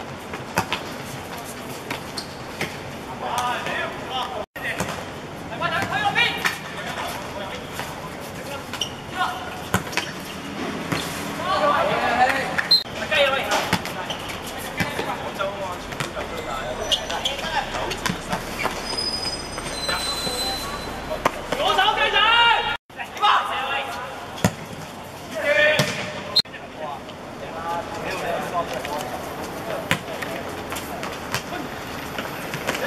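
Footballers' shouts carrying across the pitch in scattered bursts, with the occasional thud of the ball being kicked. The sound cuts out for an instant twice, about a fifth and three quarters of the way in.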